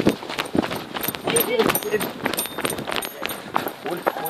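Running footsteps on dry dirt ground, uneven quick steps, with people's voices talking over them.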